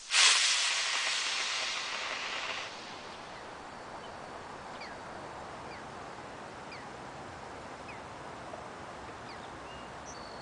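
Model rocket's C6-5 upper-stage motor lighting right after its B6-0 booster burns out, a rushing hiss that fades as the rocket climbs away and stops about two and a half seconds in. After that, quiet open-air background with a few faint bird chirps.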